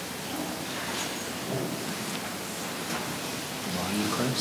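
Steady hiss of room noise in a large hall, with faint low voices and a few soft clicks.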